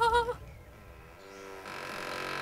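A cartoon character's wordless voice, a held, wavering hum-like note, ends about a third of a second in. It is followed by quiet with faint low tones.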